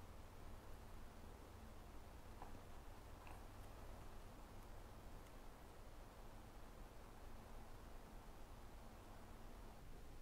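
Near silence: room tone with a faint steady low hum and a couple of very faint ticks.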